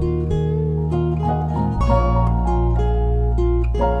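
Guitar and piano playing a slow instrumental together: single plucked guitar notes move over sustained low bass notes, and the bass changes about two seconds in.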